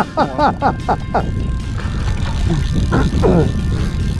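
A man laughing in short bursts for about a second, then a steady low rumble with a few words over it.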